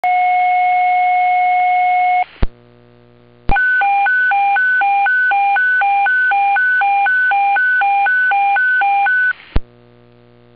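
Fire department dispatch alert tones over a radio scanner: a steady tone for about two seconds, then a squelch click and a short gap with hum. After another click, a high-low alternating alert tone runs about twice a second for some six seconds and ends in a click as the transmitter unkeys.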